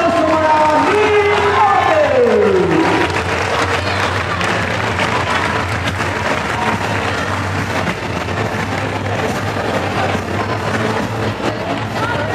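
A performance soundtrack with a voice ends about three seconds in on a long falling tone. Then an audience applauds and cheers.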